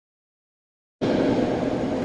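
The audio feed is completely silent, a dropout, for about the first second. Then a steady rushing room noise from the hall's microphone feed cuts in suddenly.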